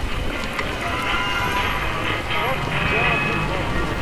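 A dense din of many voices over steady noise, like a crowd.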